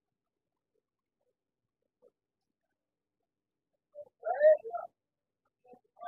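Near silence, broken about four seconds in by one short pitched vocal sound lasting under a second.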